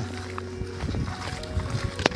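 Irregular low rumbling of wind and handling noise on a handheld microphone, with rustling of dry brush, as it is carried quickly through bushes, over steady background music.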